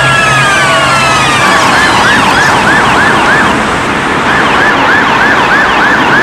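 Police vehicle sirens sounding together: a fast yelp over a slow, falling wail at first, then a rapid yelp of quick rising whoops about three a second, with a brief break in it about two-thirds of the way through.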